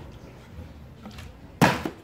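A large plastic bottle, flipped, landing on a sandy concrete floor with a single thud about one and a half seconds in.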